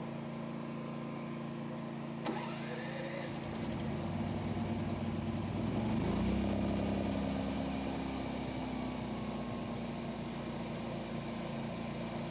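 Predator 9500 inverter generator being electric-started: a click about two seconds in, then the engine catches and speeds up over the next few seconds before settling to a steady full-speed run with its eco-throttle off. A steady engine hum is already present underneath.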